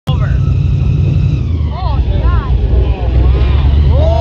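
Airboat engine running low and steady, with people's voices rising and falling over it.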